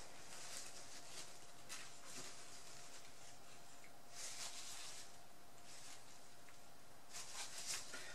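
Faint short hissing squirts from a plastic squeeze bottle of fluid acrylic paint being squeezed out in a line, a few soft bursts, two of them about halfway and near the end, over a faint steady hum.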